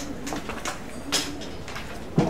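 A pen scratching across paper in a few short writing strokes, the strongest about a second in, under a man's low drawn-out hum.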